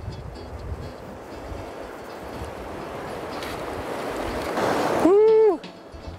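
Rushing water of a fast-flowing river with wind on the microphone, growing gradually louder. About five seconds in comes a loud, drawn-out call from a man, rising and then falling in pitch.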